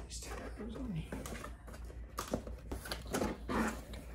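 A large cardboard box being opened: the lid slid and lifted off, with several short scraping and rustling sounds of cardboard against cardboard.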